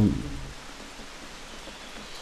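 The tail of a man's drawn-out hesitation sound at the very start, then steady, even background hiss of an outdoor setting with no distinct event.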